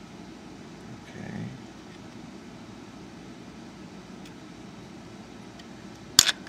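Steady background hiss of room tone, with a faint short swell about a second in and a few faint ticks.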